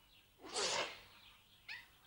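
A woman crying: a loud breathy sob about half a second in, then a short, high whimper that falls in pitch near the end.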